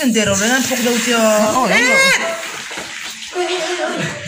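People talking loudly and excitedly, their voices swooping up and down in pitch, with a steady hiss behind.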